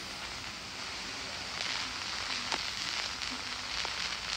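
Hiss and crackle of an early-1930s optical film soundtrack, steady, with a few faint clicks scattered through it.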